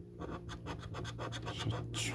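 A coin scraping the silver coating off a paper scratch card in quick short strokes, several a second, starting a moment in.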